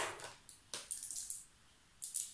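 Small handling sounds of buttons being taken from a jar: one sharp click about two-thirds of a second in, with a short rattle after it.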